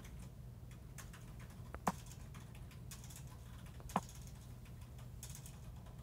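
Light finger taps and clicks on a smartphone touchscreen, with two sharper, louder clicks about two and four seconds in, over a low steady hum.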